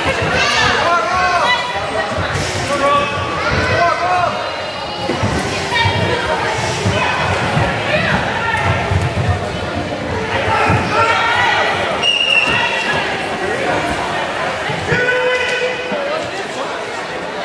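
Many overlapping voices talking and calling out in a large hall, with scattered thuds of feet on the wooden sports floor during karate sparring.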